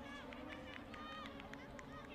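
Faint ambience on the pitch at a women's football match: brief, distant voices of players calling out over a steady low hum.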